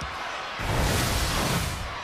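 A broadcast replay-transition sound effect: a sudden whoosh of noise with a low rumble, starting about half a second in and lasting a little over a second, over the hum of the arena crowd.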